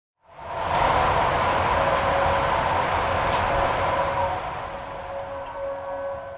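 Intro sound design: a rushing, rain- or wind-like noise with a faint held drone that fades in just after the start and dies down over the last couple of seconds.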